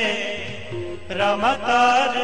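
Sikh devotional kirtan: a male voice singing a hymn, gliding between held notes, over steady sustained instrumental notes.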